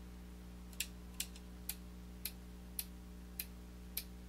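Sharp single clicks from computer input while an on-screen list is scrolled, about two a second at uneven spacing, over a steady low electrical hum.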